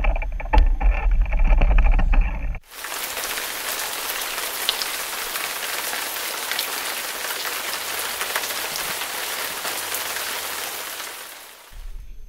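Steady rain falling, an even hiss that fades out near the end. Before it, a loud low rumble with knocks runs for the first two and a half seconds and cuts off abruptly.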